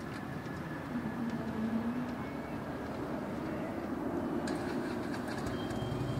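Distant Airbus A321neo jet engines rumbling steadily as the airliner rolls out and slows down the runway just after touchdown, with a hum that rises in pitch partway through.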